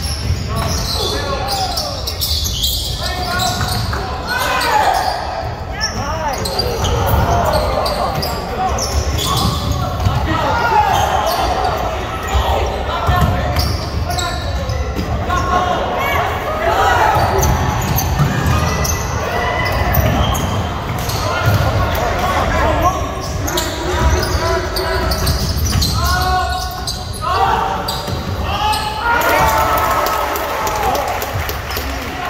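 Basketball dribbled and bouncing on a hardwood gym floor during live play, with players and spectators calling out in a large gym.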